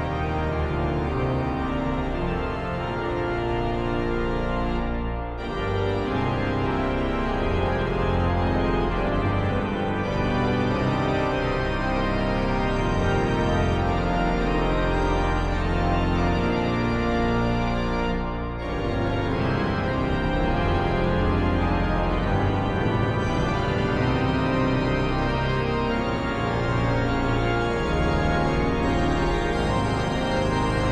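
Sampled pipe organ of Notre-Dame-de-l'Annonciation cathedral in Nancy, played from a three-manual virtual organ console: sustained full chords over a pedal bass. The sound briefly breaks off between phrases about five seconds in and again around eighteen seconds.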